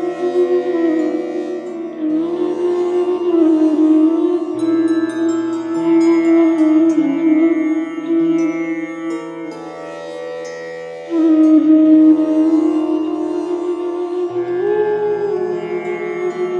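Meditation flute music: a slow melody with gliding ornaments over held lower notes that change every few seconds. It goes quieter briefly past the middle, then swells again.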